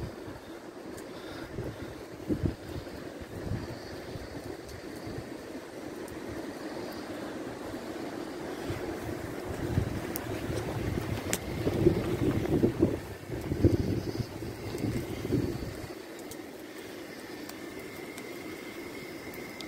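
Wind buffeting the microphone in irregular low gusts, strongest in the middle of the stretch, over a steady low hum, with a few sharp clicks.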